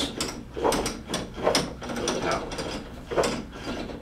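Drive mechanism of a homemade motor-driven rotating-arm rig clicking and clattering in a steady rhythm, about two clicks a second, as it slowly turns a weighted arm around a vertical shaft at about 30 RPM on an under-6-volt drive.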